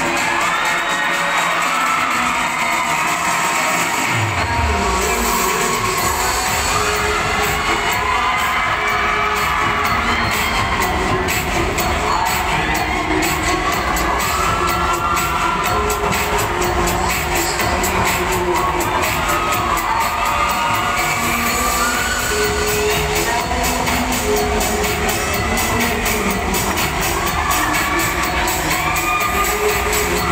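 Dance music for a dancesport heat, with a crowd cheering and shouting over it throughout. The music's bass comes in about four seconds in.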